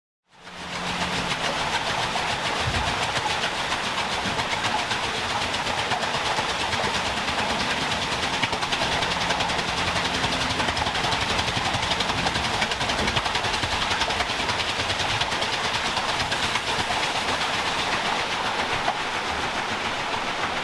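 The Great Laxey Wheel, a 72-foot water wheel, turning with a steady rush of water pouring through its buckets. The sound fades in just after the start and then holds evenly.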